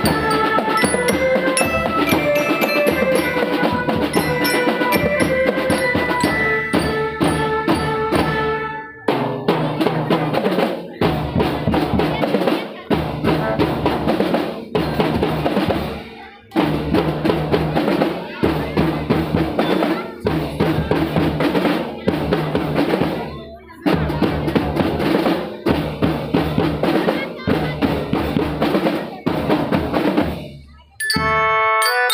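School drum band playing: for about the first nine seconds a melody over marching drums, then drums alone, snare and bass drums beating in rhythmic phrases broken by short pauses.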